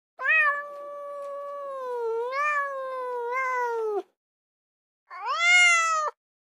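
Two long, drawn-out animal cries like a cat's meow: the first lasts about four seconds, sliding slowly down in pitch with two small rises, and the second, about a second before the end, rises then falls.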